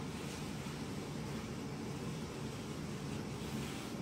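Steady low background noise of room tone with no distinct events.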